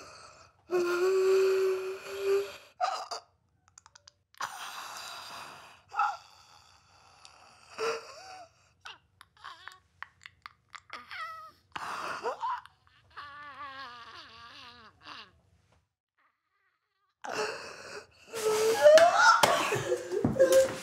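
A woman crying out, gasping and sobbing in distress in short bursts: a held cry about a second in, broken cries and gasps through the middle, and a shaky, wavering cry after the halfway point. After a short silence near the end the cries get louder and denser.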